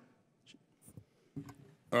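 Quiet room tone with a few faint, brief rustles and clicks, about half a second, one second and one and a half seconds in.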